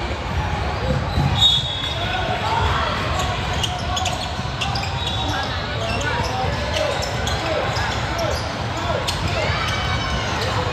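A basketball bouncing on a hardwood court, with repeated short thuds, over a steady hubbub of spectators' voices and shouts, all echoing in a large hall.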